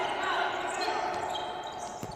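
Court sound of a futsal game in progress: the ball and players' shoes on the hard court floor, with players' voices in the background, at a steady moderate level.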